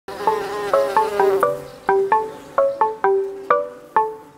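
Intro jingle of short, bright struck notes in a quick melody, each note dying away fast, with a buzzing-bee sound effect over the first second and a half.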